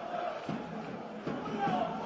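Players' shouts and calls on a football pitch in an empty stadium, with a few short knocks of the ball being played.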